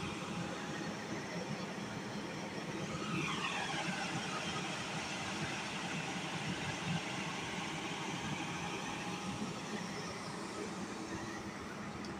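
Diesel engine running steadily, a continuous hum of fixed pitch, with a faint falling whine about three seconds in.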